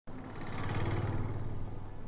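A motor vehicle's engine noise: a steady low hum under a hiss that swells about a second in and eases near the end.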